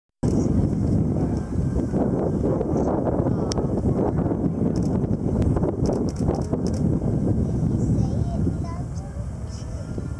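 Low-flying jet airliner passing overhead: a dense, low, steady rumble of jet engine noise that eases a little near the end, with voices of onlookers mixed in.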